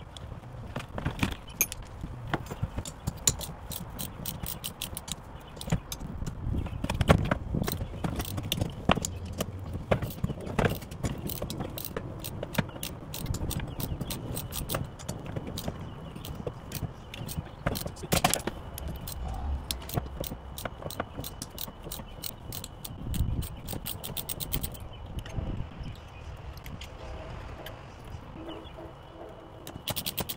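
Hand ratchet wrench clicking in quick runs as bolts on a jet ski's handlebar clamp are worked loose, with metal-on-metal taps and knocks from handling the bars.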